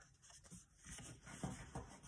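Faint rustling and sliding of cardstock as it is lined up and pressed flat by hand.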